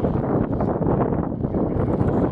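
Wind buffeting the microphone, a steady rumbling rush.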